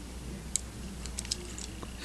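A few faint, scattered clicks of fingers handling and moving the clear plastic parts of a 1/144 Gunpla model kit.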